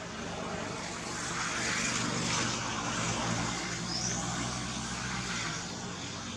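A vehicle passing at a distance, its noise swelling to a peak in the middle and then fading. A short high rising chirp sounds about four seconds in.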